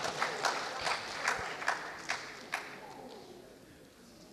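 Audience applause: scattered hand claps that thin out and fade away about three seconds in.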